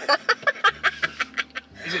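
A person laughing in a quick run of short, breathy pulses, about eight a second, that stops near the end.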